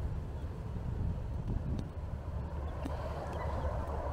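Steady, low outdoor rumble with no distinct event standing out.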